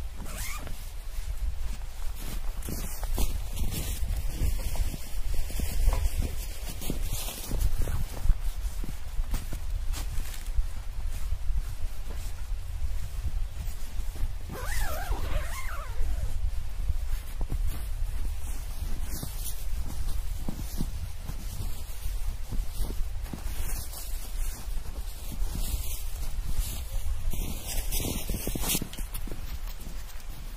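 Nylon tent fabric rustling and a tent door zipper being worked, in irregular bursts of crackling and scraping.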